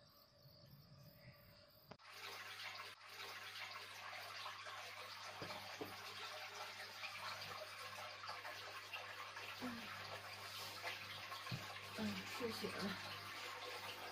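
Steady rush of running water from a tap, with a low hum under it, starting abruptly about two seconds in after a near-silent start.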